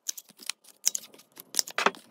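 Handheld plastic corner-rounder punch snapping through cardstock bookmark corners: several short sharp clicks, the loudest near the end.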